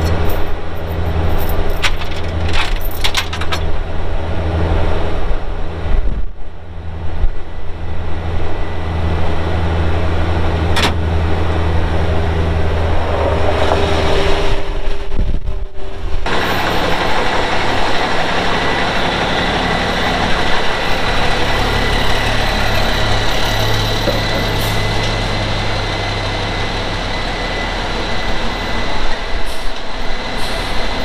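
A skid steer's diesel engine runs steadily while it takes the weight of a lift axle hung on chains under a truck frame, with a few metallic chain clinks in the first seconds. About sixteen seconds in the sound changes to a brighter running noise with a thin steady whine.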